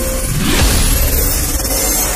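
Cinematic intro music with a low impact hit about half a second in, followed by a rising sweep.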